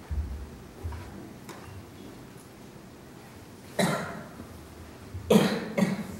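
A person coughing: one cough about four seconds in and a double cough near the end. Before that come two dull low thumps from the microphone stand being handled, one at the start and one about a second in.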